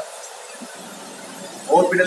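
Steady hiss of the open gas burner flames in a chapati-puffing machine, with a man's voice starting near the end.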